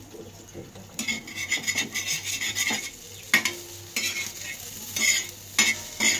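Coriander vadi pieces sizzling in oil on an iron tawa, in spells, as a metal fork turns them. The fork scrapes and clinks sharply against the pan, once about three seconds in and again near the end.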